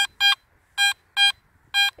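Garrett AT Max metal detector giving five short, high-pitched beeps as the coil is swept back and forth over a buried target. The target ID reads 82, a high-conductivity non-ferrous signal that the detectorist hopes is a silver coin.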